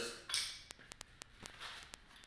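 A padded ankle strap being unfastened and pulled off the foot: a short rasping rip of its hook-and-loop closure about a third of a second in, then a fainter rasp near the end.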